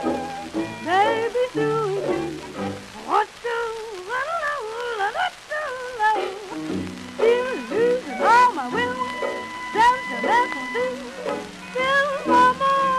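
A 1928 78 rpm shellac record playing an early jazz dance-band arrangement: a wavering melody line over a steady rhythm, with the record's surface crackle and clicks running under it.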